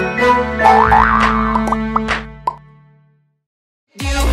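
Short cartoonish logo jingle with plucked notes and a rising sliding note about a second in. It fades out about two and a half seconds in and leaves silence.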